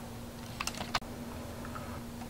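A few light plastic clicks of remote-control buttons being pressed, clustered about half a second to a second in, with a couple of fainter clicks later, over a faint steady hum.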